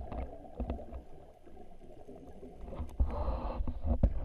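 Muffled underwater sound heard through a camera housing: a low rumble of moving water, with a louder rushing, gurgling stretch about three seconds in.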